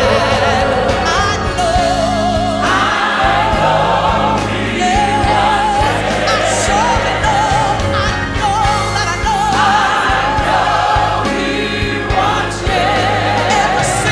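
Live gospel music: a lead voice sings long held notes with wide vibrato over a choir and band.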